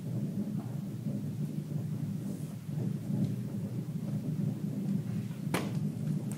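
A low drum roll rumbling steadily for the hanging of the 'Hungarian rope trick', cut by one sharp crack about five and a half seconds in.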